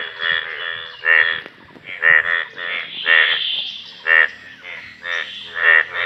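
A chorus of breeding male Indian bullfrogs, yellow in their mating colours, calling in a rain-filled pond. Short, rasping, pulsed croaks come one or two a second from several frogs at once and overlap.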